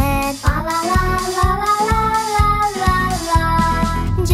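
Children's song: a child's voice singing over a steady beat, holding one long note through the middle.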